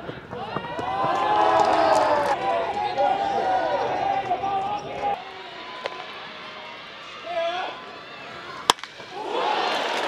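A wooden baseball bat cracks once, sharply, against a pitched ball about a second before the end; this is the loudest moment and the hit drops into center field. Crowd voices fill the first half, and the crowd swells again with cheering right after the hit.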